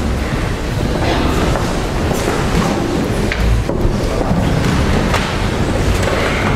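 Audience applauding in a concert hall, a dense steady clatter of clapping, with a few knocks and a low rumble as the orchestra players get up from their seats.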